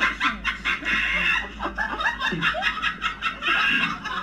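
People laughing in quick, irregular bursts of giggling.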